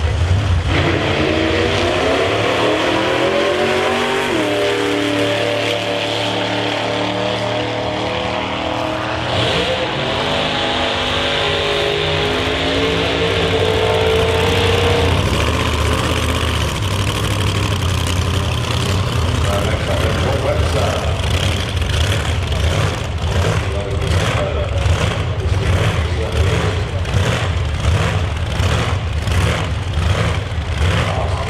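Supercharged engine of an Outlaw Anglia drag car revving hard, its pitch climbing and falling in several pushes over the first fifteen seconds. It then settles to a rough, pulsing idle.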